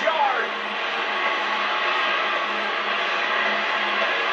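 Steady hiss-like background noise with a low hum, and a brief voice trailing off in pitch at the very start.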